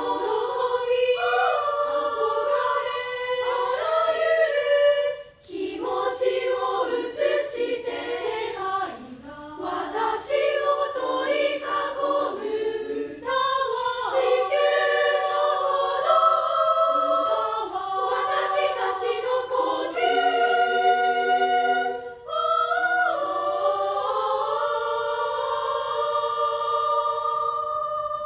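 Unaccompanied three-part treble choir of about twenty junior high school girls singing, holding sustained chords in several voice parts, with brief breaks about five seconds in and again near twenty-two seconds.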